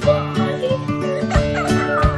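Background music with a young girl's laughter and giggling over it.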